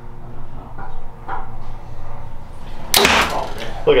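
A Prime Inline 3 compound bow is shot once about three seconds in: a single sharp snap as the string is released and the arrow flies, after a few seconds held at full draw.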